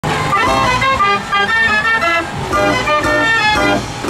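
A 52-key Gasparini fairground organ playing a lively tune on its pipes, with a quick-moving melody over held bass notes.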